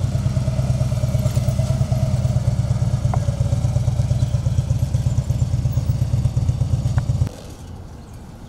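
Harley-Davidson touring motorcycle's V-twin engine running with a steady deep pulse as the bike rides by, cutting off suddenly near the end.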